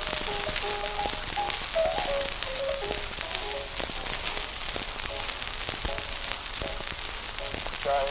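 Instrumental passage from an 1898 Berliner gramophone disc: a melody of short notes in the middle register, heard through heavy surface crackle and hiss with frequent clicks.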